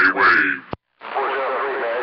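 CB radio: a man's voice on the air ends with a sharp click, then a short dead silence. About a second in, another station comes in weaker, a faint voice under steady static.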